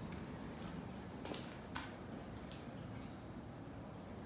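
A few light, sharp ticks and taps over faint room tone, the clearest two about a second and a half in, less than half a second apart.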